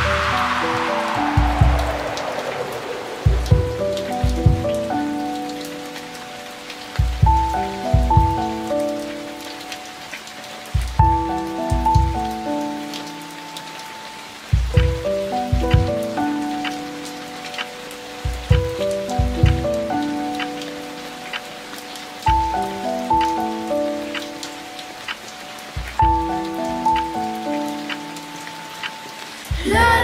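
Instrumental electro-pop passage: a synthesizer plays a repeating sequence of short plucked notes, the phrase coming round about every three and a half to four seconds, over deep bass thumps. It opens with a falling whooshing sweep.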